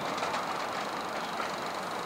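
Steady outdoor background noise with no distinct event, an even hiss-like ambience at moderate level.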